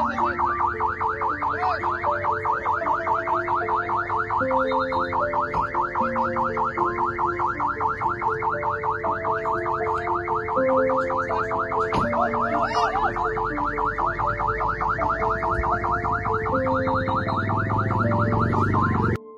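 An ambulance siren warbling rapidly and evenly, over background music with held notes.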